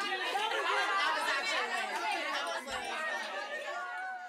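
Several people chattering and talking over one another, with no single voice or words standing out.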